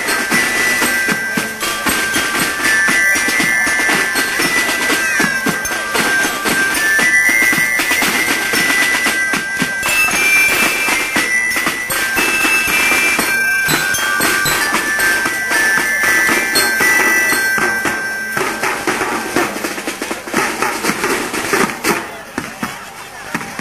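Marching band music: drums beating under a high melody of held notes, fading and growing uneven near the end.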